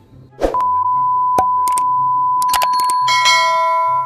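Colour-bar test-pattern tone: a loud, steady, high single-pitched beep starts about half a second in and holds. A few sharp clicks sound over it, and about three seconds in a bright, bell-like chime joins it.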